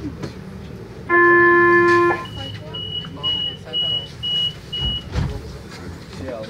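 Tram door-closing warning signal: one loud steady tone lasting about a second, then six short high beeps about half a second apart. A low thump follows near the end.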